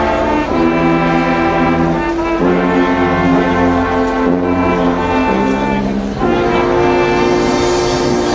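A marching band's brass section (trumpets, trombones, euphoniums and sousaphones) playing a slow passage of long held chords. The chords change every second or two over low sousaphone bass notes.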